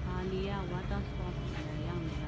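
A person's voice, a few untranscribed words in the first second and again near the end, over a steady low hum.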